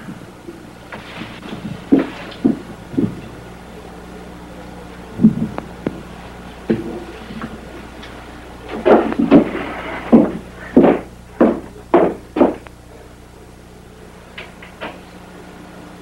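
A series of sharp knocks and clicks, with a run of about seven loud ones roughly half a second apart starting about nine seconds in, over a steady low electrical hum.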